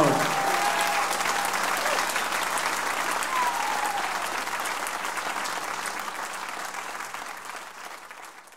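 Audience applauding and cheering at the end of a song, with one brief shout about three seconds in; the applause fades away over the last few seconds.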